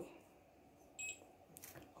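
A single short electronic beep from the circuit board's buzzer about a second in, the signal that the EM-18 RFID reader has read a tag. A few faint clicks follow near the end.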